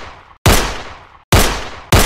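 Three gunshot sound effects, each a sharp crack that fades away over about half a second; the first comes about half a second in, the next two close together near the end.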